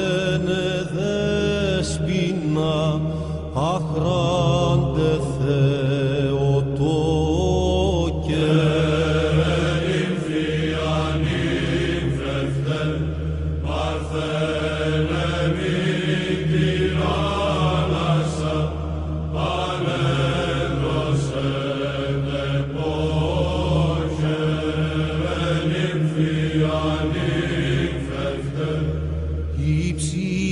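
Chanting: a voice sings a wavering, ornamented melody over a steady low drone held underneath.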